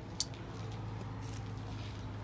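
Clear plastic grafting film handled by hand as it is wrapped around a grafted stump: a sharp crackle about a quarter of a second in and softer rustles later. A steady low hum runs underneath.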